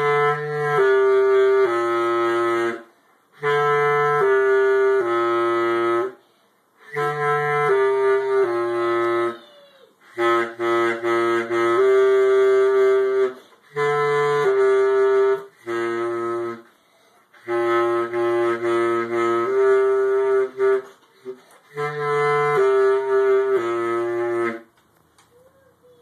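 Bass clarinet playing a slow solo melody of held notes in short phrases, with brief breaths between them. The playing stops about a second before the end.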